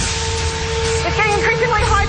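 Steady held tone over a low rumble, with faint wavering voices about a second in.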